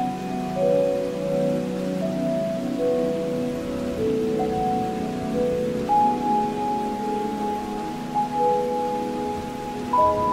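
Slow relaxation music of long, soft held notes changing every second or two over a low drone, with a steady hiss like rain beneath it.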